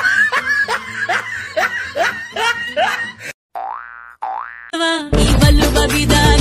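Edited-in comic sound effects: a run of quick rising glides, about two a second, then two slower rising glides. Loud dance music with a heavy beat comes in about five seconds in.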